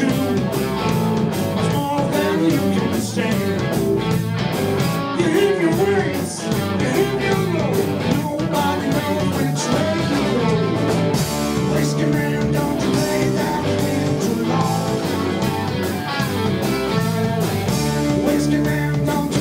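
Southern rock band playing live, with electric guitars, bass guitar and a drum kit.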